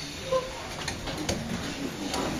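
Quiet room of people shifting and settling into position: soft rustling with a few light clicks and knocks, and one brief short tone about a third of a second in.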